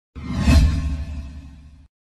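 Whoosh sound effect with a deep rumble under it, swelling to a peak about half a second in, then fading and cutting off suddenly just before two seconds.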